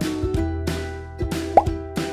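Light background music with a few short plop sound effects over it, one a quick upward bloop about one and a half seconds in.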